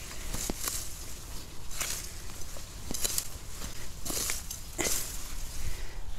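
Butterbur stalks being cut at the base by hand in a garden patch, about five or six sharp, crisp cuts roughly a second apart, with leaves rustling.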